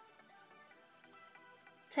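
Faint background music with soft held notes.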